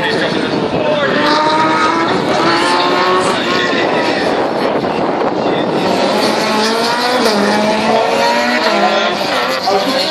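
Rally car engine revving hard as it drives the stage, its note climbing in pitch in runs as it accelerates through the gears, with a brief tyre squeal.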